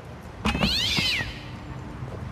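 A cat yowling once, a single high call lasting under a second that rises and then falls in pitch. A sharp knock comes as it starts.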